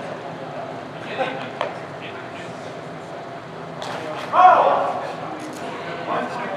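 Indistinct talking in a large hall, with two sharp knocks between one and two seconds in and a loud call from a voice a little past four seconds.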